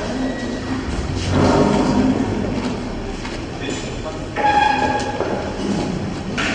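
Street noise: a steady rumble with indistinct voices, louder about a second and a half in and again past the four-second mark.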